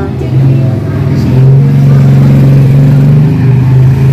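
A motor engine running with a steady low drone, growing louder about a second and a half in.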